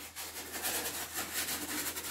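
Paper towel crumpling and rubbing in the hands while drying something off, a run of rough, scratchy strokes.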